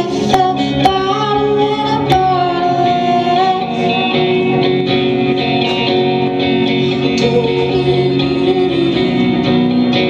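Live solo song: an electric guitar played through an amplifier, with a woman singing.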